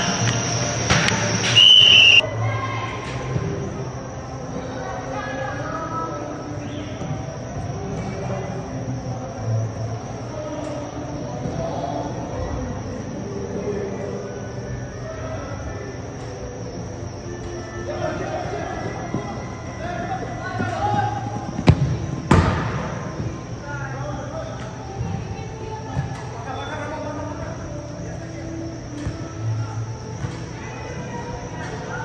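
Indoor soccer match in a large echoing arena hall: scattered players' voices calling out and ball kicks, with one sharp loud kick about 22 seconds in, over background music.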